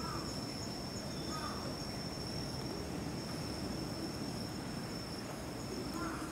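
Insects trilling in one steady, high-pitched, unbroken tone over a low outdoor rumble, with a couple of short faint chirps near the start.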